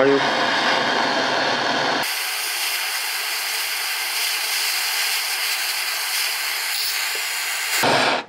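Heat gun running, a steady hiss of blown hot air aimed at a coil of enamelled copper wire to soften it and burn off the insulation. Its deeper part drops away about two seconds in, and it cuts off just before the end.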